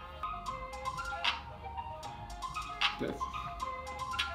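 Rap instrumental beat playing: a synth melody over ticking percussion, with sharp hits about a second in and again near three seconds.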